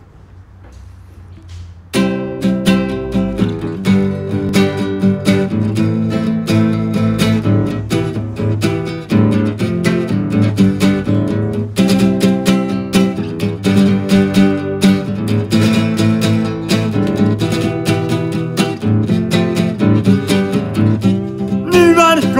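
Solo acoustic guitar playing a song's introduction in strummed chords. It starts abruptly about two seconds in, after a faint hush.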